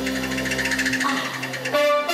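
Live band music in a Cantonese pop song, with held chords under a fast, evenly repeated figure. The low notes drop away about a second in, and a louder held note comes in near the end.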